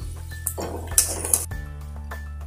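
Metal clinks of a steel plate and ladle against an aluminium kadai, a few sharp clinks about half a second, one second and a second and a half in, with a short rustling scrape between them.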